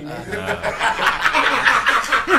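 Several men laughing together in quick, breathy pulses of laughter that grow stronger about halfway through.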